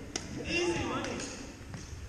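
Indistinct voices echoing in a large gym. A few sharp smacks of badminton rackets striking shuttlecocks come through, one just after the start and one near the end.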